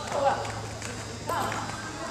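A person's voice calling out twice in short raised calls, one at the start and one about a second and a half in, over a steady low hum.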